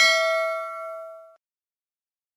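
Notification-bell 'ding' sound effect of a subscribe-button animation: a chime of several bell-like tones, ringing on and fading, then cut off about a second and a half in.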